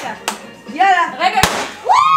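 A handheld confetti cannon going off with one sharp pop about one and a half seconds in, amid excited exclamations. A high, drawn-out shout starts near the end.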